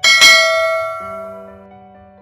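A notification-bell sound effect: one bell chime struck at the start, ringing out and fading over about a second and a half, over soft background music.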